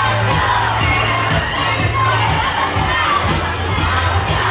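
Audience screaming and cheering over loud dance music with a steady low bass.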